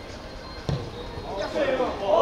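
A football kicked once with a dull thump, about two-thirds of a second in, on a free kick. Players' voices rise into shouting near the end.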